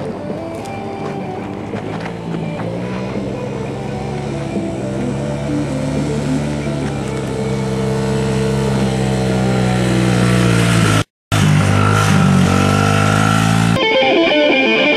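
Small dirt bike engine running as the bike rides closer, its pitch rising and falling with the throttle and growing louder. The sound drops out briefly about eleven seconds in, and electric guitar starts right at the end.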